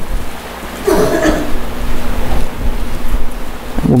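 Rustling of many Bible pages as a congregation turns to a passage, with a brief cough about a second in.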